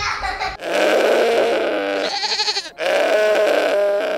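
A goat bleating loudly twice: two long, wavering bleats, the first about two seconds long, the second starting right after a brief break.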